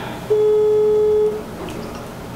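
Telephone ringback tone from a mobile phone on an outgoing call: one steady beep of about a second, heard as the call rings out.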